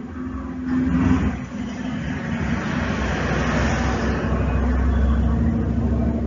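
Motor vehicle engine noise, growing over the first couple of seconds and then holding loud with a low rumble and a steady hum.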